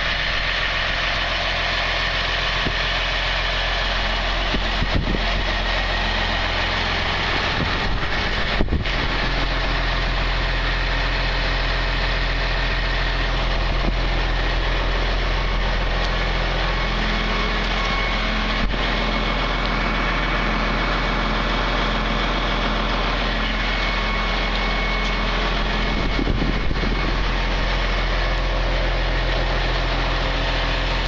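An engine idling steadily, an even low hum that holds without revving for the whole stretch.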